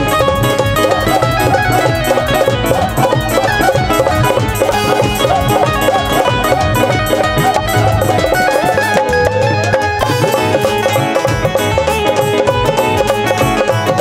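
Loud live Punjabi folk band playing an instrumental passage: a plucked string melody over a steady, driving drum beat, with no singing.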